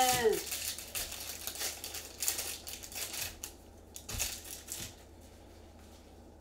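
Foil wrapper of a Bowman baseball card pack crinkling and tearing as gloved hands open it, in a run of sharp crackles that dies away about four and a half seconds in.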